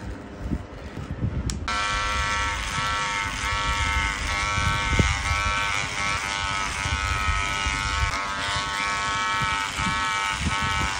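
Electric hair clippers cutting hair. After a low rumble at first, a steady high buzz from a cordless clipper with a comb guard starts suddenly about a second and a half in and runs on, with a single click near the middle.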